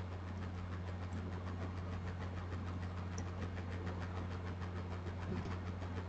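Steady low hum with a faint hiss, the background noise of a lecture recording with no speech.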